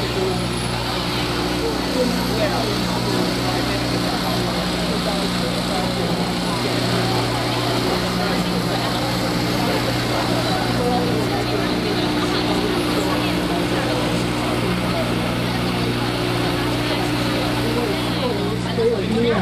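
A steady low hum made of several held pitches, with indistinct voices over it.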